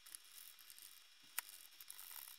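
Near silence, broken by one short click about one and a half seconds in: a screwdriver on a screw in a Roomba's plastic top cover.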